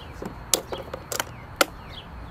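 A red spring-loaded jumper cable clamp being fitted onto a car battery's positive terminal: three sharp clicks as the clamp snaps and is seated, about half a second apart.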